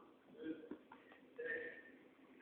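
Faint, distant human voices: two short calls, about half a second in and about a second and a half in, with a few faint clicks between them.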